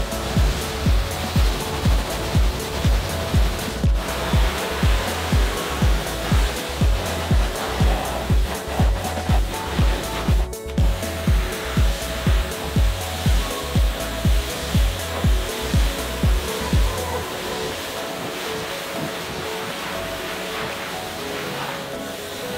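Pressure washer jet spraying water onto a car's wheel and bodywork, a steady hiss, under background music with a strong beat about twice a second. The beat drops out about seventeen seconds in, leaving the spray and the music's held tones.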